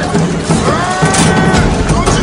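A long drawn-out yell, rising at the start and then held for about a second, over background music with a steady beat.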